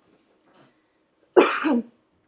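A woman coughing once, a single short burst about a second and a half in.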